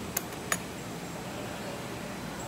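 Two sharp clicks close together, about half a second apart near the start, from the screwdriver and fittings being worked as the glass rinser's top nut is turned against the screw held from below; then only a steady low hiss.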